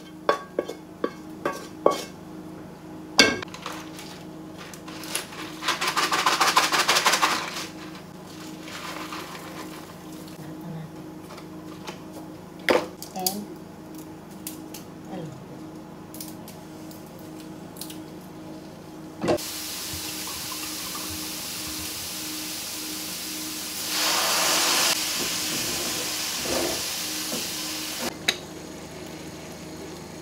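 Wooden spoon knocking and scraping against aluminium frying pans as browned roe deer meat is tipped from one pan into the other, with sharp clicks and clatter in the first few seconds. It is followed by food sizzling in the hot pan, in a steady stretch in the last third that is loudest for about a second around two-thirds through.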